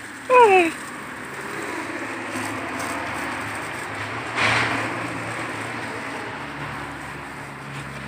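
Garden hose spraying water onto flower-bed plants, a steady hiss that swells briefly about four and a half seconds in. A short falling vocal sound comes right at the start.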